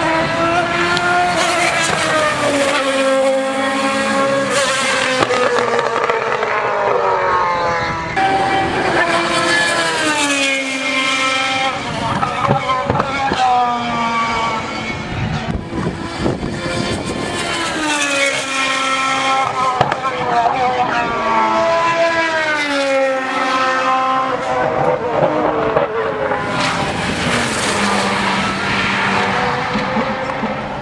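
Endurance race cars passing one after another, their engines loud, the notes repeatedly climbing and dropping in pitch as they accelerate, shift and go by.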